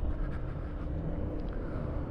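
Honda ADV150 scooter under way at low speed: steady low rumble of its single-cylinder engine, mixed with wind and road noise.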